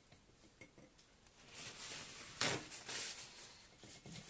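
Handling noises at a work table: a short rustle, then a sharp clink or knock about two and a half seconds in, followed by more rustling.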